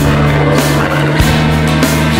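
Instrumental passage of a rock song: held low chords with a few drum hits, and no vocals.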